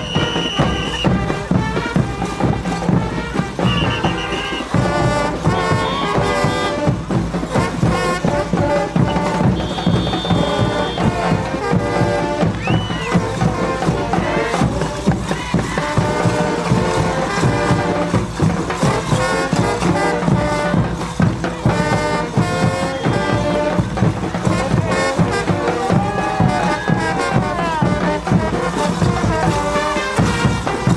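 Live Bolivian brass band playing caporales music, brass melody over a steady beat.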